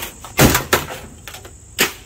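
A metal toaster thrown at a basketball hoop: a series of knocks and clatters, the loudest about half a second in, with another near the end.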